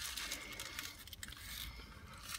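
Faint chewing and light crinkling of a paper wrapper as a burrito with crunchy tortilla chips inside is bitten and eaten, over a low rumble.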